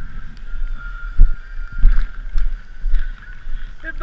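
Camera handling noise: an uneven low rumble with a few sharp knocks, the loudest about a second in and again near two seconds, as an action camera is jostled against a snow-covered ski jacket.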